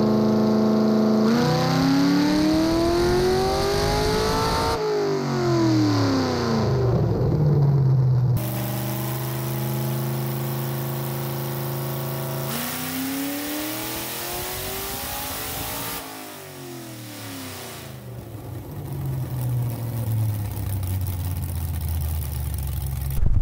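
Cammed 4.8L LS V8 making a wide-open-throttle dyno pull with the air cleaner off. The revs climb steadily for a few seconds and then fall back, a second climb and fall follows about halfway through, and it settles back to idle near the end.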